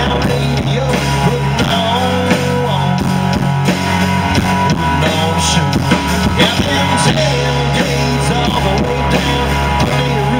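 Live country-rock band playing: electric and acoustic guitars, bass guitar and drum kit, with a steady beat. The deepest bass drops away for a few seconds in the middle and comes back in.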